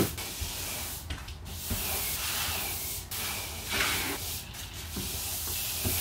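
Broom bristles sweeping a hard floor, scraping in a series of repeated strokes.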